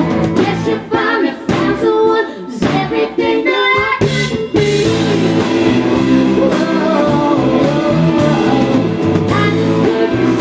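Live country-rock song: a woman singing over her strummed acoustic guitar with an electric guitar and band. The low end drops away from about one second in and the full band comes back in around four and a half seconds in.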